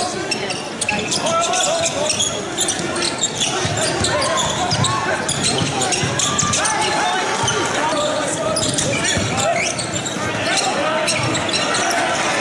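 Live basketball court sound in a large hall: a ball bouncing on the hardwood floor, sneakers squeaking, and players' and crowd voices.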